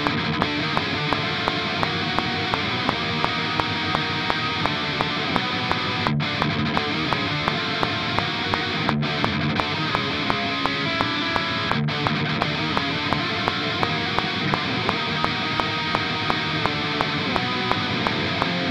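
Distorted ESP LTD electric guitar playing a fast black-metal riff of minor chords, picked steadily against a metronome click that ticks about three times a second.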